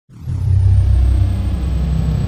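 Intro sound effect for an animated logo: a deep rumble that swells up within the first half second and then holds steady, with a thin high tone gliding downward at the start.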